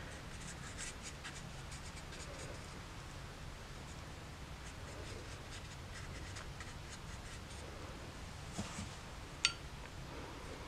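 Faint scratching and dabbing of a watercolour brush on wet watercolour paper as paint is dropped in, with one sharp click near the end.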